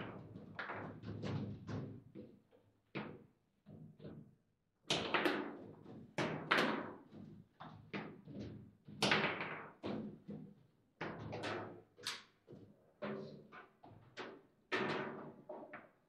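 Foosball table in fast play: irregular sharp knocks and thuds as the ball is struck by the plastic men and hits the table, with louder cracks from hard shots.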